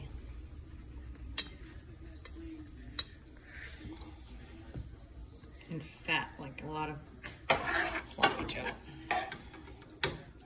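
Metal spoon scraping and clinking against a ceramic plate while wet sloppy joe meat is spooned onto hamburger buns. There are a few sharp clicks, the loudest two close together near the end.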